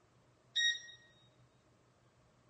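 A single short, bright chime about half a second in. It rings with a few clear tones and fades out within about a second, over faint steady room hum.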